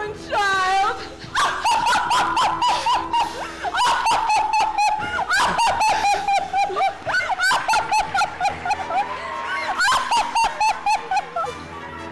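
Musical number with accompaniment and a woman's long, high, wordless sung note, ornamented with quick flourishes, that holds and swells before the music breaks off near the end.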